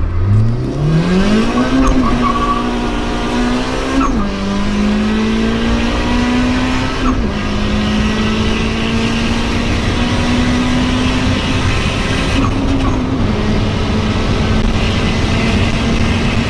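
Turbocharged Honda Civic four-cylinder engine at full throttle, heard from inside the car, revving out toward 7,000 rpm while accelerating hard through the gears. There are three upshifts, about 4, 7 and 13 seconds in; each is a quick drop in engine pitch followed by another climb, over rising road and wind noise.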